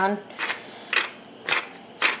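Hand pepper mill grinding black pepper, in short rasping twists about twice a second.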